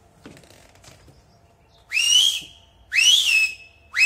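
Two short, loud, high whistles about a second apart, each sliding quickly up to a held note and then dropping away; a few faint knocks come before them.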